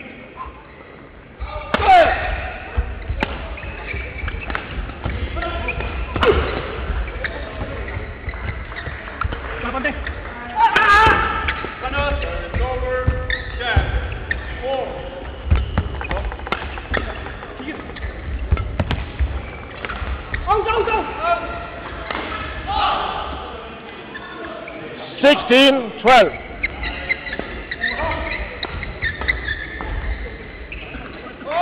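Men's doubles badminton rallies: repeated sharp racket strikes on the shuttlecock and the players' footwork on the court floor, with calls from players and officials in between.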